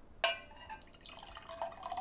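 Liquid poured from a glass teapot into a glass, starting with a sharp clink of glass on glass about a quarter second in, then a thin trickle that runs on.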